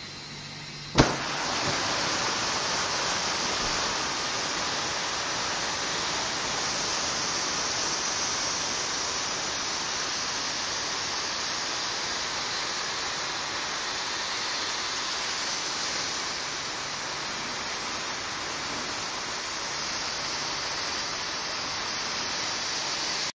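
Steady hiss of compressed air from a shop air line, starting with a sharp click about a second in and running on evenly.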